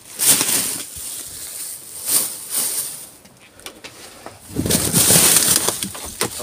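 Plastic bags rustling and crinkling as gloved hands pull and handle them, in several bursts, the longest and loudest about five seconds in.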